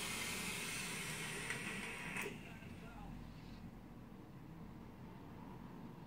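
Long drag on a dripping atomizer on a vape mod: a steady hiss of air being drawn through the hot coil for about two seconds, cut off by a click. A softer, breathy exhale follows.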